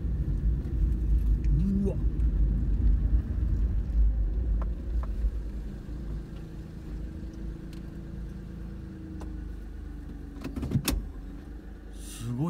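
A car heard from inside the cabin, its engine and tyres giving a low rumble as it rolls slowly across a car park, then settling to a quieter idle about halfway through once it stops. A single sharp click near the end.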